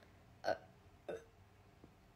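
Two brief, quiet vocal sounds from a person, a little over half a second apart: short murmurs, not words.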